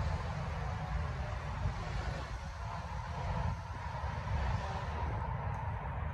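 Distant tree-cutting machinery running steadily, heard through a low rumble on the phone microphone.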